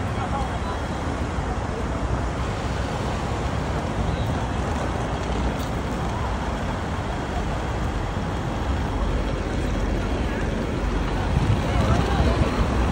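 Steady city road traffic: cars and buses running past on a wide street, with a low rumble that swells slightly near the end.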